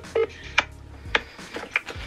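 Phone ringback tone over a speakerphone: a short last burst of the steady ringing tone, cut off as the call is answered. Then a low line hum and a few faint clicks.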